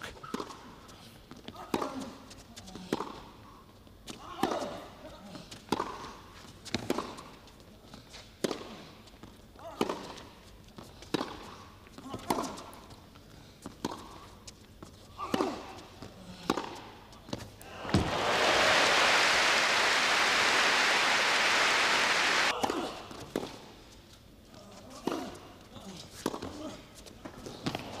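Tennis ball struck back and forth in a long rally on an indoor carpet court, with a sharp hit about every second and a bit. A burst of crowd applause follows for about four seconds, then a few more ball hits or bounces.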